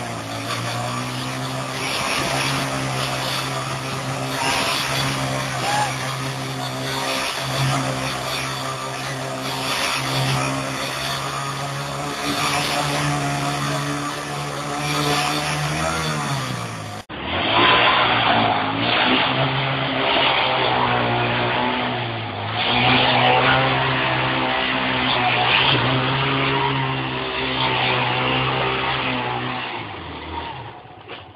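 Hero Honda CBZ single-cylinder motorcycle engine held at high revs while the bike is spun round on its side in loose dirt, the engine note wavering every second or two. About 17 seconds in the sound cuts abruptly to another recording of the same kind of revving.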